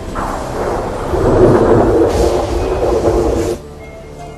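A loud, dense rumble that cuts off abruptly about three and a half seconds in.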